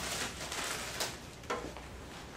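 Faint handling noise from a plastic oxygen mask and its tubing being put together: soft rustling, with brief clicks about a second and a second and a half in.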